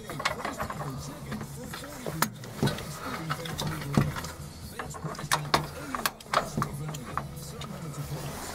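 Faint radio talk in the background, with scattered sharp clicks and knocks from hands working at the loosened dashboard.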